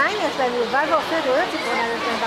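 People talking in fairly high voices over a steady rushing background noise.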